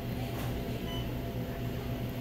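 Steady hum of neonatal incubator and monitoring equipment, with two faint short high beeps about half a second apart.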